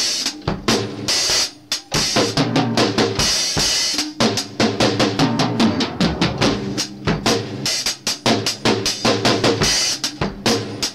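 Acoustic drum kit played with sticks: a fast, busy pattern of snare, tom and bass drum strokes with cymbal hits, broken by a brief pause about a second and a half in.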